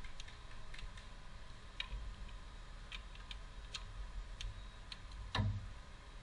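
Ratchet wrench turning valve cover bolts, giving scattered sharp ticks at an uneven pace, with one louder clack about five seconds in.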